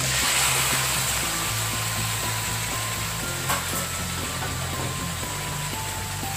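Raw pork cubes dropped into hot oil with browned onion and garlic, setting off loud sizzling as they hit the pan that eases into steady frying. A single sharp tap comes about halfway through.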